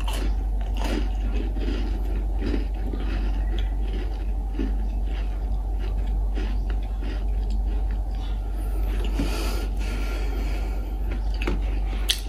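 A chocolate chip cookie bitten near the start and then chewed close to the microphone: many small irregular crunches and mouth sounds of chewing, over a steady low hum.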